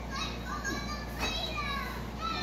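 A young child's high-pitched vocalizing: a few short squealing calls that fall in pitch, one about a second in.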